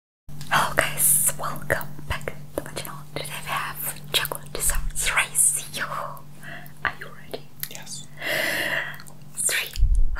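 Whispered speech close to the microphone, starting after a brief silence, over a steady low hum.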